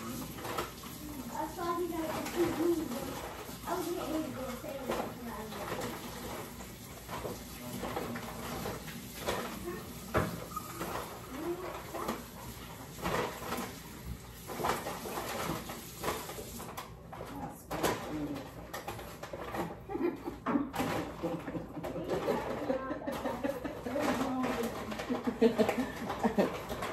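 Faint, indistinct voices away from the microphone, with scattered light knocks and clatter of kitchen things being handled.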